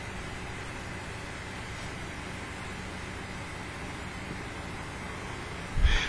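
Steady room noise and microphone hiss with a faint low hum, even throughout with no distinct events; the e-cigarette puff and exhale make no sound that stands out above it.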